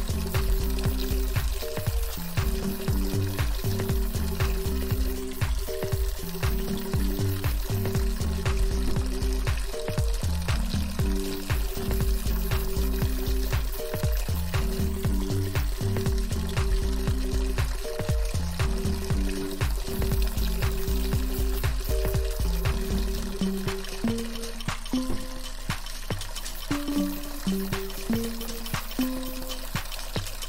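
Soft ambient music, a slow melody of held notes, over a steady rush of running water with fine crackle and spatter. The deep bass drops away about three-quarters of the way through.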